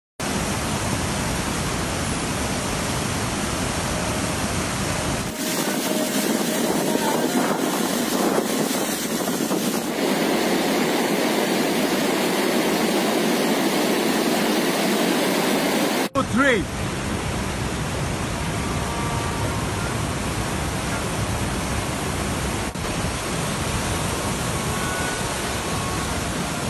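Fast mountain stream rushing over rocks in white-water rapids, a loud, steady noise. Its tone changes abruptly twice, about five seconds in and again about sixteen seconds in, and there is a brief rising call or whistle just after the second change.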